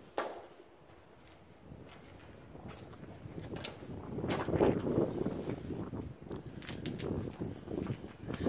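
Footsteps and scuffing on a concrete bunker floor with loose rubble, with the knocks and rubbing of a handheld phone being moved. There is a sharp click just after the start, and the scuffing grows louder from about three seconds in.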